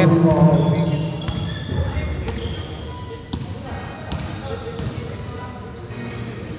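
A basketball bouncing on an indoor gym floor, a few separate thuds with voices echoing around the hall.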